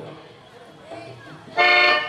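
After a pause, a short, loud, steady horn-like toot with many overtones, lasting about half a second near the end.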